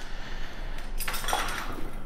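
Steel wrenches being handled, clinking lightly against each other with some rustling.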